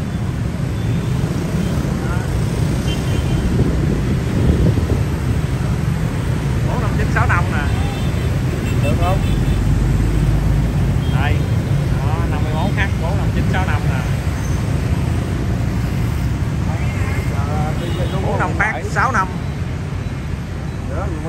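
Steady low rumble of busy city road traffic, with motorbikes and cars passing close by, and people talking at intervals over it.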